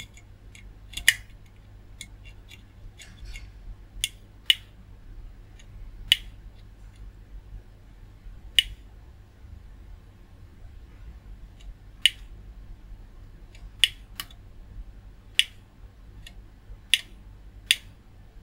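Multimeter probe tips clicking against solder joints and component leads on a circuit board, about a dozen sharp ticks at irregular intervals while connections are traced, over a faint low steady hum.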